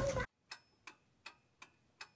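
Shop-floor noise with voices cuts off suddenly a quarter second in, then a faint ticking-clock sound effect, about three even ticks a second, plays over dead silence.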